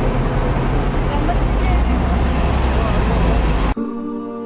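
Diesel coach bus engine idling close by with a steady low rumble, under the chatter of people around it; it cuts off suddenly near the end and music begins.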